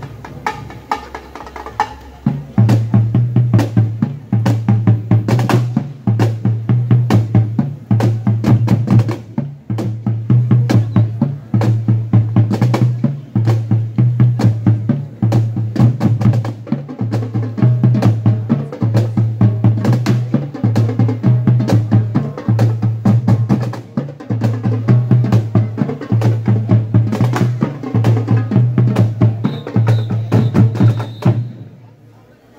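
Marching band drum line of snare and bass drums playing a steady, driving march beat. It starts quieter and comes in loud about two and a half seconds in.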